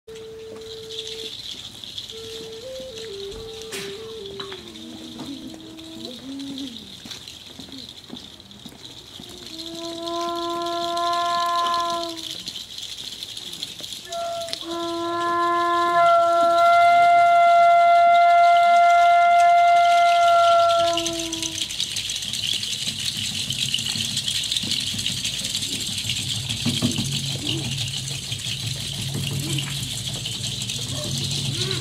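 Wooden flute played by mouth: a soft, short stepwise falling melody, then two long held notes blown loudly, the second lasting about six seconds. A steady high hiss runs underneath, and after the notes only outdoor background noise remains.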